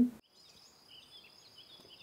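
Faint meadow ambience: a steady high insect chirring with a few soft bird chirps.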